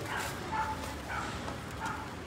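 Four faint, short animal calls, spaced about half a second apart, over steady outdoor background noise.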